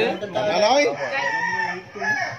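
Roosters crowing, with calls overlapping one another.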